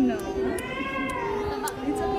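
A toddler's high-pitched drawn-out vocal call, rising and then falling, from about half a second to just past a second in, with people talking around it.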